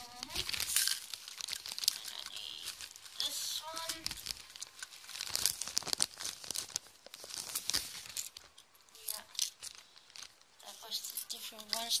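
Clear plastic bag crinkling and rustling in irregular bursts as small packets of glass beads are rummaged through and pulled out of it.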